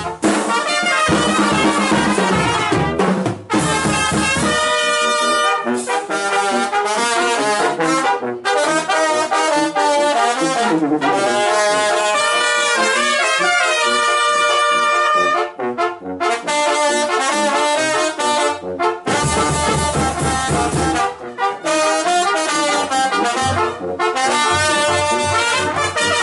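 Mexican banda de viento playing live: trumpets and trombones carry the melody over sousaphone, a bass drum with mounted cymbal and snare drums. The bass and drums fall back through much of the middle, leaving mostly the horns.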